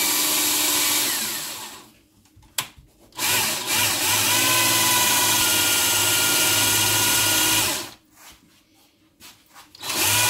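Cordless drill boring into wood. It runs for about a second and a half and winds down, then after a click runs again for about four and a half seconds before stopping, and starts once more right at the end.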